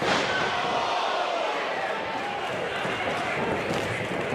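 A wrestler's body slamming onto the ring mat right at the start, followed by a steady din of crowd voices.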